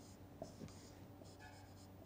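Faint short strokes of a marker pen on a whiteboard: a few separate scratching strokes as a result is written and boxed.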